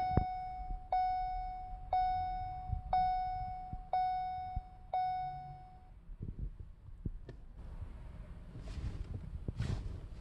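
2014 Ford Escape dashboard warning chime sounding six times, one tone a second, each tone fading out, as the ignition is switched on. It then stops, leaving only faint rustling.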